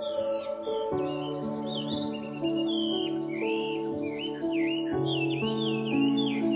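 Slow, calm instrumental music of long held notes and chords, with birds chirping over it throughout in short, repeated rising and falling calls.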